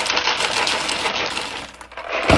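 A stream of coins poured from a cardboard cereal box into a bowl: a continuous jingling rattle of metal coins landing and piling up, which thins out near the end.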